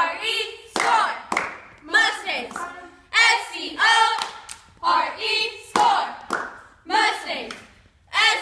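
A group of cheerleaders shouting a cheer in unison, punctuated by sharp hand claps, the shouted bursts coming in a steady rhythm about once a second.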